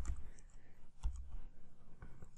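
Computer keyboard typing: a run of scattered light key clicks.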